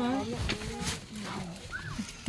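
A voice speaking briefly at the start, then a quieter stretch with a couple of short sharp clicks and a brief rising squeak near the end.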